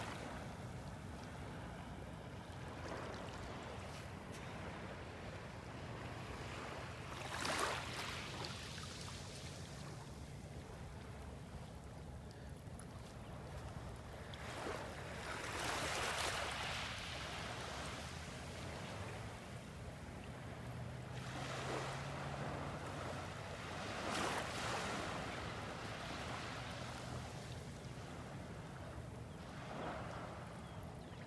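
Small waves lapping and washing on a beach shoreline, a soft steady wash that swells three times as little waves break on the sand.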